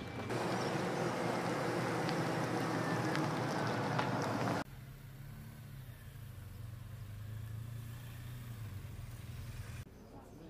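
A loud, even rushing noise that cuts off abruptly near the middle. After it comes a steady low engine hum from a motorcycle riding toward the listener.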